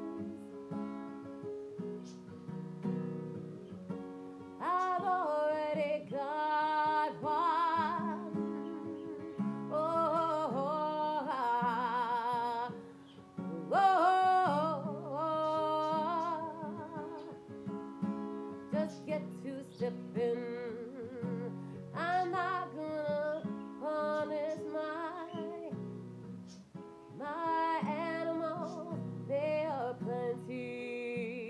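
A woman singing to her own acoustic guitar accompaniment, the guitar playing steady chords throughout. Her held, wavering sung phrases come and go over it, with short guitar-only gaps between lines.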